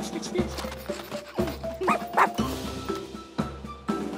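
Cartoon background music with a puppy's two short, rising yips about two seconds in.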